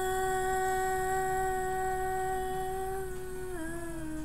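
A woman's voice singing one long held note, steady in pitch, then dropping a step near the end.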